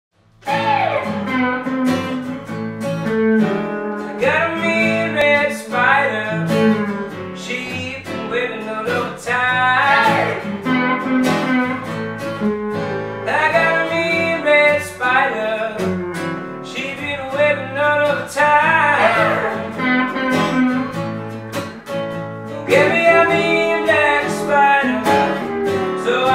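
Acoustic guitar strumming chords with an electric guitar playing blues lead lines over it, its notes bending and sliding in pitch. The music starts about half a second in and runs on as an instrumental intro.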